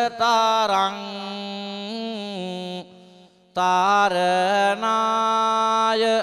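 A Buddhist monk chanting Sinhala verse in kavi bana style, one male voice held in long, sustained melodic lines. The voice breaks off briefly about three seconds in, then resumes.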